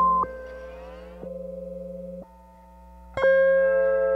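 Lap steel guitar looped and processed through a Critter and Guitari Organelle running the Deterior patch: layered sustained notes that cut in and out abruptly, with a rising slide about half a second in and a loud new chord entering a little after three seconds. A steady low 60-cycle mains hum lies underneath.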